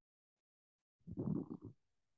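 An otherwise silent video-call line, broken about a second in by a brief, muffled, low grumbling sound lasting under a second.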